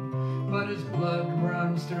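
Acoustic guitar playing in the gap between two sung lines, with notes sustaining. A man's singing voice comes back in right at the end.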